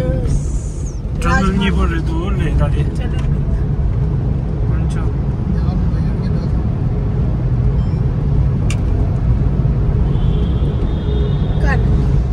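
Steady road and engine rumble heard inside a moving car's cabin.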